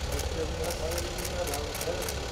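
Indistinct talking voices with light footsteps clicking a few times a second, over a steady low rumble.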